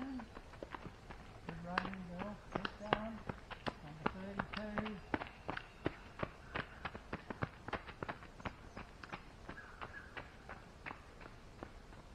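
Running footsteps on a dry dirt and gravel trail, about three steps a second, growing louder as a runner comes near and fading again near the end. Short voiced sounds, like a voice or hard breathing, come in the first five seconds.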